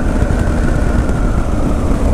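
Motorcycle engine running steadily while riding, under heavy low wind rumble on the rider's microphone, with a faint steady whine above it.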